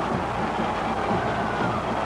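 Steady, even background noise of an old film soundtrack, with a faint held musical tone through the middle.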